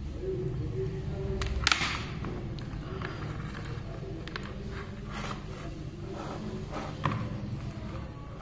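A charging cable's connectors and a phone being handled, with short clicks, the sharpest about one and a half seconds in and another near the end, as a connector is fitted into the phone's charging port. A steady low hum runs underneath.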